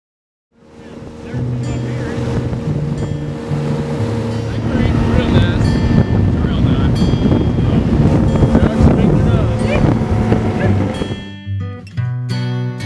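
A music bed of sustained low notes mixed over a motorboat running across the water, with voices now and then. It fades in within the first second and drops away shortly before the end.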